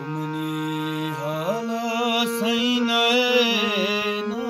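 Harmonium playing sustained reed chords. From about a second and a half in, a man sings a long, wavering wordless vocal line over it.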